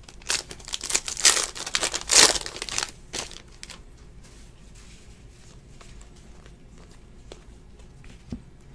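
Foil trading-card pack wrapper being torn open and crinkled off a stack of cards, loudest about one and two seconds in. The crinkling stops about three seconds in, leaving only faint ticks as the cards are handled.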